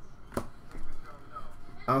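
A single sharp snap of a stiff Prizm trading card being flicked as a stack of cards is cycled in the hand, with light card-handling noise around it. A man's voice starts near the end.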